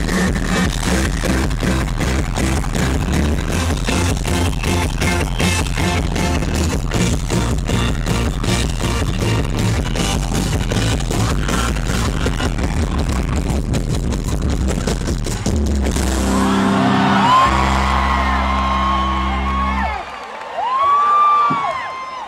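Live rock band playing a fast song with a driving, even beat, which ends about three-quarters of the way through on a held final chord. The crowd whistles and cheers over the chord and after it stops.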